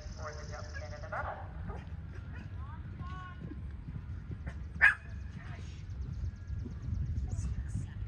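A dog barks once, sharply, about five seconds in, the loudest sound here, after a few short whines. Under it runs a steady low rumble, with faint voices in the first second.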